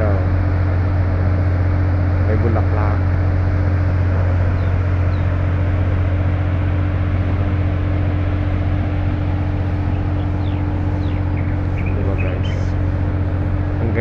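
Steady, loud, low machine hum with a constant drone over a haze of noise, unchanging throughout.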